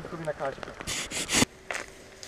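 Leaves and grass rustling in three quick bursts about a second in, the last the loudest, as someone pushes through wet, overgrown roadside vegetation.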